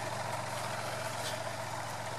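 Kubota tractor engine idling steadily nearby, a constant low hum.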